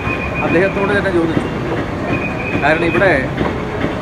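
A man's speech in a crowd, over a steady low rumble and a thin high steady tone that comes and goes.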